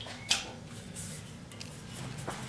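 Quiet handling of an aluminium drinks can, with one short light click about a quarter of a second in and a few fainter taps after.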